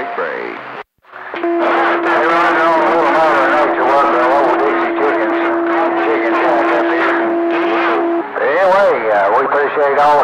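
CB radio receiving distant stations on skip: voices overlapping and too garbled to make out, with a steady whistle tone through most of it. The signal drops out briefly about a second in.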